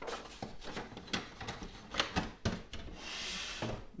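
A sheet of printer paper handled and set into the rear input tray of an HP DeskJet 4155e inkjet printer. Several light taps and clicks of paper and plastic, with a short rustle about three seconds in.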